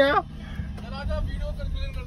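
Low, steady rumble of a Maruti Suzuki Wagon R engine idling, heard from inside the car under a man's faint talking.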